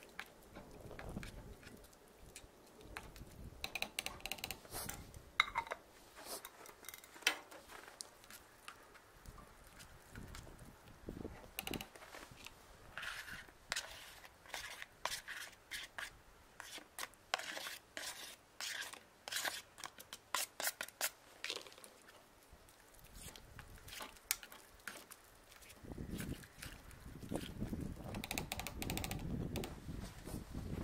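A spoon stirring noodles in a small metal backpacking pot on a canister stove, scraping and clicking against the pot wall in quick, irregular strokes, densest in the middle stretch.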